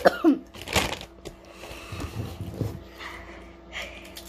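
A child coughing and clearing the throat in short bursts.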